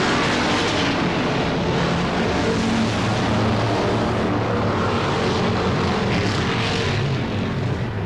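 A field of dirt-track Sportsman stock cars with V8 engines (a big-block Mopar and small-block Chevrolets) at race speed around a dirt oval, their engines blending into one steady drone with shifting engine pitches as cars pass.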